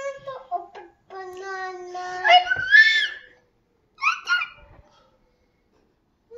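A young child's high-pitched voice in drawn-out, wordless sounds. It is loudest about two and a half seconds in, with two short sounds about four seconds in.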